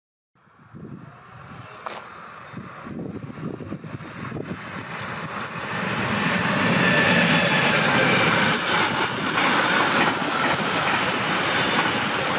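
Electric-hauled intermodal freight train running past at close range: the rumble of wheels on rail builds steadily as it approaches, peaks as the locomotive goes by about halfway through, then holds as a steady roll of container and tank wagons passing.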